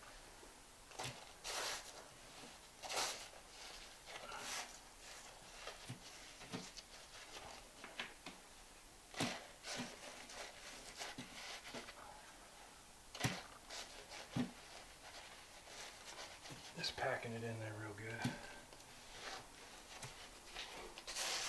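Hands packing and smoothing deck mud (a dry sand-and-cement mortar) under the edge of a linear shower drain: a scattered series of short, faint scrapes and pats.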